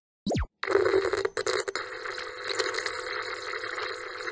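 Logo-intro sound effect: a quick falling sweep, then a steady buzzing static in the style of a glitching TV screen.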